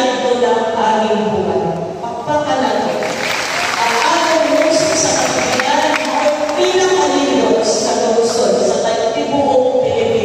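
A woman's voice amplified through a microphone and loudspeakers in a large hall, with a burst of audience applause about three to five seconds in.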